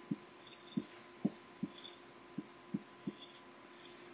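Felt-tip marker tapping and pressing on paper while writing an equation: about seven soft, irregular knocks, faint, over a light steady hum.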